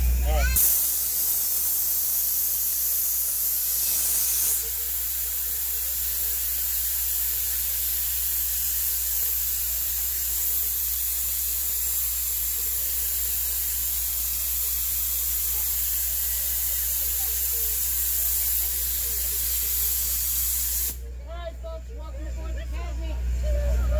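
Steady hiss of escaping steam from a small steam train locomotive. It starts abruptly about half a second in and cuts off suddenly about a second before the end, with a low hum underneath.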